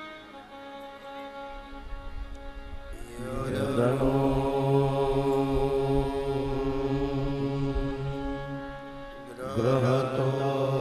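A man's voice chanting a long, held deep note over a steady instrumental drone. The chant enters about three seconds in, breaks briefly near the end, and starts again.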